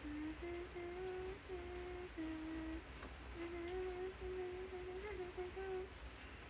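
A woman humming a tune softly with her mouth closed, a string of short held notes with a brief pause about three seconds in.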